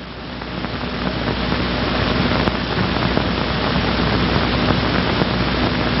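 Steady hiss and low hum of an old 16mm film soundtrack, swelling gradually louder and cut off suddenly at the end.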